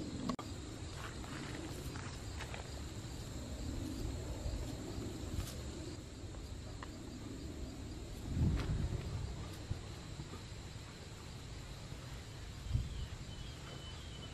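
Quiet outdoor background in woodland: a low rumble with a faint steady high insect drone. There is a soft thump about eight and a half seconds in and another near the end.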